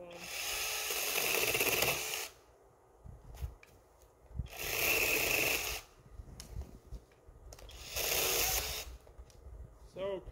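Brushless battery-powered 6-inch mini chainsaw running in three short bursts, the first about two seconds long and the later two about a second each, with quiet gaps between.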